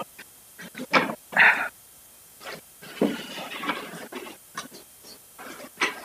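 Irregular bursts of close microphone noise and muffled murmuring from people settling in before a talk, with gaps between them; the loudest come about one to one and a half seconds in.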